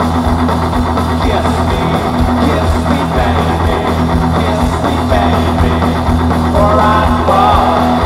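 Live rock band playing loud and steadily, with electric guitars, bass guitar and drums.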